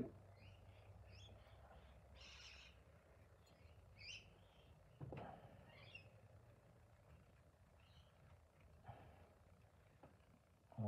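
Near silence, with faint bird calls in the background and a soft knock about five seconds in, as a knife cuts the sprue out of a sand-casting mould.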